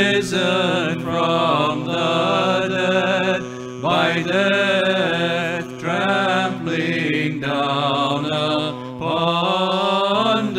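Byzantine chant: a man singing a slow, ornamented melody in phrases broken by short breaths, over a steady held drone note (ison).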